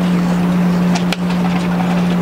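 A loud, steady low hum at a single pitch over outdoor background noise, briefly broken by a click just past halfway.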